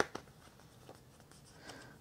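Faint handling noise of a CD and its paper booklet: one sharp click right at the start, then a few soft taps and paper rustles.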